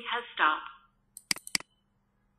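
Zoom's automated voice prompt announcing that recording has stopped, with a thin, phone-like sound. It ends about a second in and is followed by a few quick computer mouse clicks.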